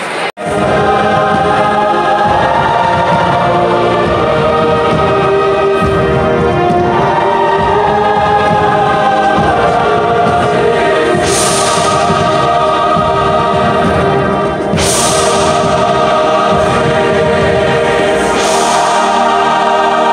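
A large youth choir singing held chords with orchestral accompaniment, at a steady full level, heard live from the audience in a concert hall.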